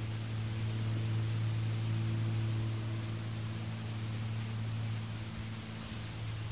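A steady low hum with fainter higher overtones, over an even background hiss.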